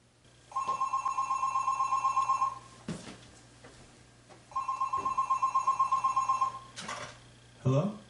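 Landline telephone ringing twice, each ring a rapid warbling trill about two seconds long, followed by a short clatter as the handset is picked up near the end.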